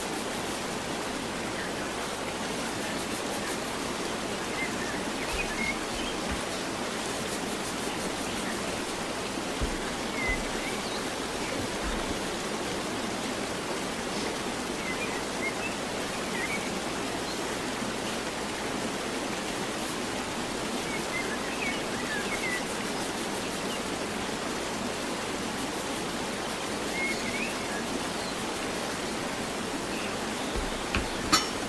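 A steady, even hiss, with faint short high chirps every few seconds.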